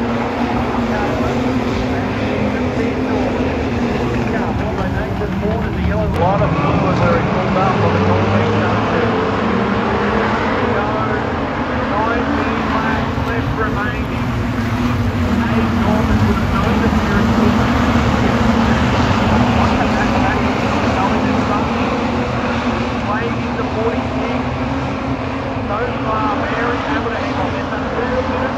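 A pack of street stock race cars lapping a dirt speedway oval: a steady, loud din of many engines under throttle, with one engine note rising about six seconds in.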